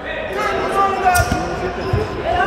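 A futsal ball thudding twice on a hardwood gym floor, about a second in and again near the end, under the talk of voices echoing around the hall.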